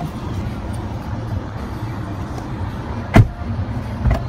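A 2015 Nissan Sentra's 1.8-litre four-cylinder engine idling steadily, heard from inside the cabin as a low hum. A single loud thump cuts in a little after three seconds in.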